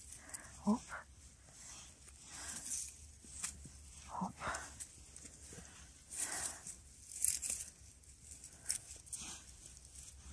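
Short, separate rustles and scrapes of a small mushroom knife cutting saffron milk caps at the stem in dry pine needles and grass, with the hand moving through the litter.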